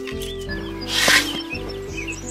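Background music of sustained, held notes over a low pulsing bed, with short high chirps through it and a brief rush of noise about a second in.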